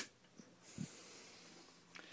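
A single sharp click, the circuit's power switch being flipped on, followed by a breathy hiss of about a second from a person exhaling near the microphone.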